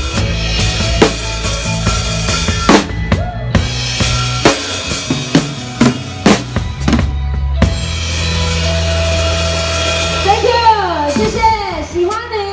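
Live band with a drum kit playing a song's closing bars: sharp drum and cymbal hits over held bass notes, thinning to a few spaced strokes, then a long held chord. A voice comes in near the end.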